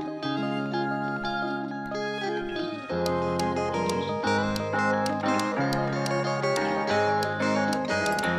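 Background music: a melody over held bass notes that change every second or so, with a light ticking beat joining about three seconds in.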